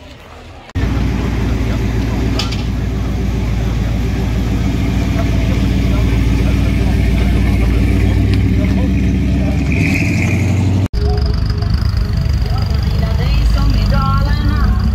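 Classic American car engines running loud, low-pitched and steady. The sound starts abruptly about a second in, with a brief dropout near the end before another car's engine carries on.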